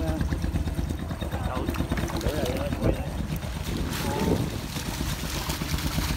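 Small boat's engine running steadily under scattered voices, with water splashing near the end as fish are tipped from a bag over the side.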